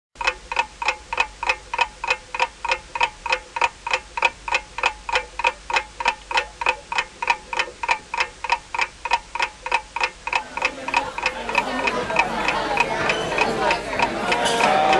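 Rapid, regular clock-like ticking, about four sharp ticks a second. It fades out as the chatter of a crowd rises from about ten seconds in.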